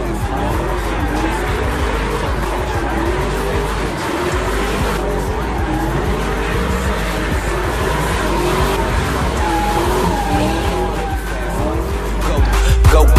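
Ford Mustang doing donuts: the engine revs up and down over and over while the rear tyres spin and squeal, with hip hop music's bass underneath.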